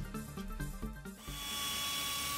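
Background music, then about a second in a 3-inch pneumatic rotary polisher starts and runs with a steady air hiss and a steady whine.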